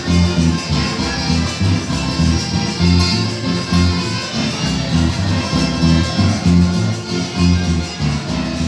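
Instrumental Latin American band music, with bass notes on a steady beat under melody instruments and no singing.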